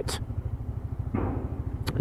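Single-cylinder four-stroke engine of a Lexmoto Diablo 125cc motorcycle running at low revs in slow traffic, a steady low pulsing heard from the rider's helmet camera. A brief rush of noise comes in just over a second in.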